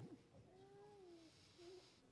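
Near silence: room tone with a faint voice drawn out in a short gliding murmur about half a second in, and a couple of briefer faint murmurs after it.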